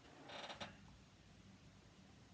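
A brief rustle ending in a click about half a second in, as a hand rubs at the back of the head and hoodie, then near silence.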